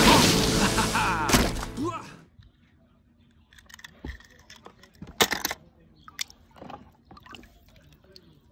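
Film soundtrack music and voices that stop about two seconds in, then a hand working a toy car through a tub of muddy water: faint splashes and small clicks, the loudest a little after five seconds.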